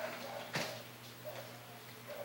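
Low, steady electrical hum of high-pressure sodium lamp ballasts running with the lamps lit. A faint click comes about half a second in.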